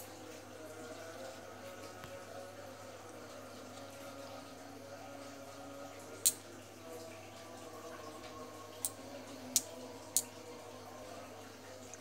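A small metal magnet clicking against a polished gemstone as the stone is tested for sticking to it: four short sharp clicks, the loudest about six seconds in and three more close together about nine to ten seconds in. Faint steady tones hang in the background throughout.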